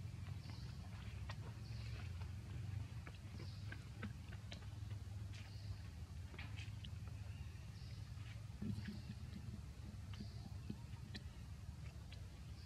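Macaques eating watermelon: faint, irregular clicks and bites of chewing and handling the fruit, over a steady low rumble. A short high chirp repeats in the background every second or two.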